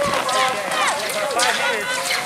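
Several spectators shouting and cheering at once as a pack of cross-country skiers passes close by, over a run of short clicks and scrapes from the skis and poles striding through the snow.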